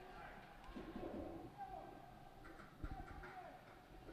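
Faint ice-hockey rink sound during play: distant calls on the ice and a few soft knocks of sticks and puck, about three seconds in.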